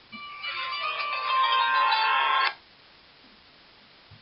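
A mobile phone ringtone melody that grows louder over about two and a half seconds, then cuts off suddenly.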